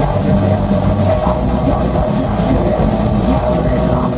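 Death metal band playing live and loud, electric guitars to the fore.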